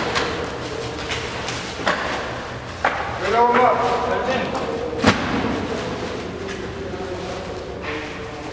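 Heavy filled sacks of raisins landing on a stack on wooden pallets in a large hall: three thuds, the loudest and sharpest about five seconds in.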